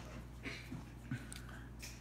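Faint handling noise from fingers gripping a plastic digital thermometer and holding down its power button, with a few soft small clicks over a steady room hum.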